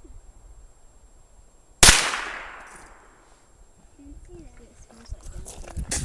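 A single rifle shot just under two seconds in: one sharp crack, with its echo dying away over about a second.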